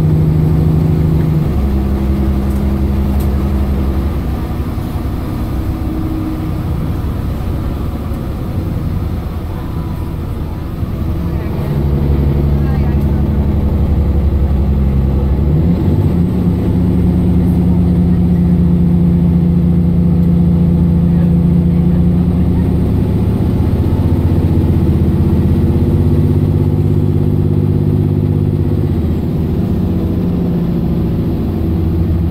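Mercedes-Benz Citaro O530 LE bus's 12-litre OM457hLA inline-six diesel, heard from inside the cabin, pulling hard under kickdown acceleration. Its drone jumps to a new note several times as the ZF Ecolife automatic changes gear. It eases off for a few seconds in the middle, then pulls hard again from about twelve seconds in and holds a long, steady drone.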